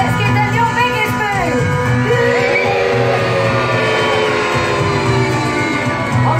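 Show music over the loudspeakers with a steady beat, with voices in the first second or so, then one long drawn-out vocal call that slowly falls in pitch.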